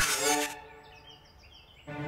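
Cartoon sound effect of a robot's extending arm snatching: a sudden swoosh-hit with a ringing chord that fades over about a second, followed by a quick run of faint high chirps stepping down in pitch.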